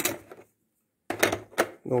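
Hard plastic puzzle pieces clicking against a plastic game board as they are slid and fitted into place: a sharp click right at the start and a few more about a second in.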